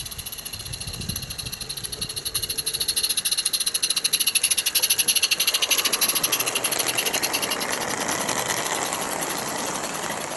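Roundhouse Lilla live-steam garden-railway locomotive passing with a train of wooden wagons. Its rapid, even exhaust beats grow louder to a peak midway and then fade as it moves away.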